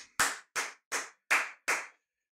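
Hand claps: five sharp claps, evenly spaced at about three a second, each dying away quickly.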